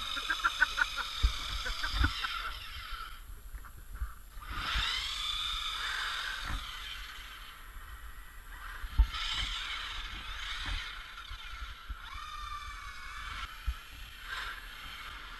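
Electric motors and drivetrains of radio-controlled trucks whining, rising and falling in pitch as they speed up and slow down. A quick run of clicks in the first second or so, and scattered low thumps.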